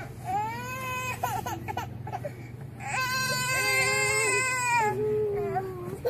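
A baby crying: short wavering wails in the first second or so, then one long wail from about three seconds in, followed by a softer, lower cry near the end.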